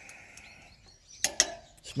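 Faint bird chirps, then a little over a second in a brief metal-on-metal scrape and clink of a flat file and depth-gauge tool against a chainsaw chain.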